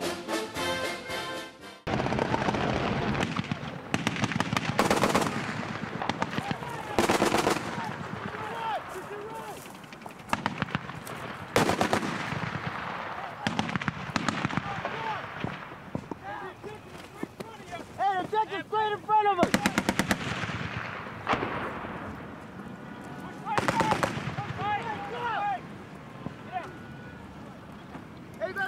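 Intro music ends about two seconds in, then heavy automatic gunfire in rapid strings of shots, with shouting voices at times.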